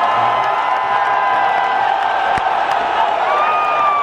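Large stadium crowd of football fans cheering and shouting in a steady din, with long held high notes rising above it, one ending about two seconds in and another starting near the end.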